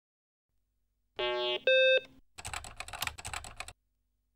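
Two-note electronic start-up beep of a BBC Micro computer, a lower tone then a louder higher one, followed by a quick run of computer keyboard key clicks for just over a second.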